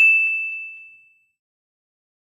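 A single bright notification-bell ding sound effect, ringing out and fading away within about a second.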